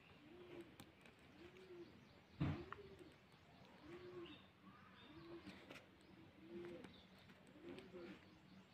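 Faint bird cooing: a soft, low call that rises and falls, repeated about once a second. A single knock sounds about two and a half seconds in.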